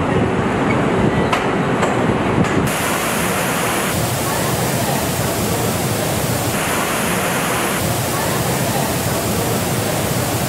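Factory clatter with a few sharp clicks. About three seconds in, a loud, steady spraying hiss from a spray booth takes over as mist is sprayed over a bare pickup truck body. The hiss shifts in tone a few times.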